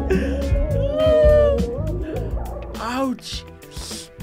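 A song from a meme clip: a heavy bass beat under a high, wailing voice that slides up and down, altered by an audio filter. The beat fades out near the end, leaving short sliding vocal cries.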